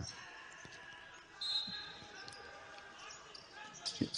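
Faint court sound of a basketball game in a large, nearly empty arena: a basketball bouncing and faint voices, with a short shrill tone about a second and a half in.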